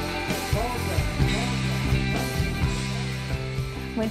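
Live rock band playing: electric guitars over a steady drum beat.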